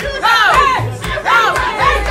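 Rhythmic shouted 'hey' chants through a microphone, about two calls a second, with a party crowd joining in over loud music with a heavy bass beat.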